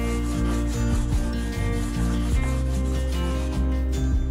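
A soft pastel stick rubbed back and forth on paper, a scratchy rubbing, heard over background music.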